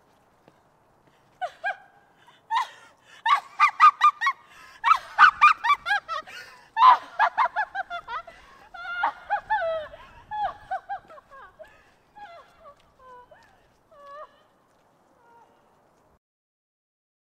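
A flock of geese honking: the calls start sparse, come thick and overlapping for several seconds, then thin out to scattered single honks that fade away near the end.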